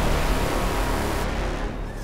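Cinematic logo-sting sound effect: the tail of a deep, rumbling rush of noise, fading steadily. Its high hiss cuts off just past halfway, and a brief whoosh sweeps through near the end.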